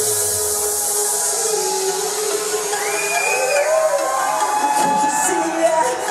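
Live pop song played loud over a concert PA, heard from within the audience, in a passage where the drum beat drops out and a sustained, gliding melody carries on, with the beat coming back near the end. A crowd cheers over the music.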